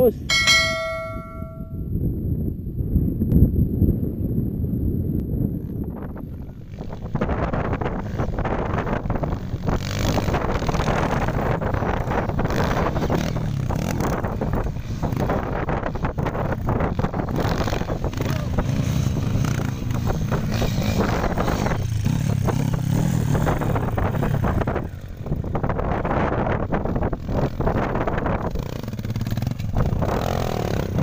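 A brief bell-like chime rings once about half a second in. It is followed by the steady running noise of trail motorcycles' engines, which thickens about seven seconds in and carries on unbroken.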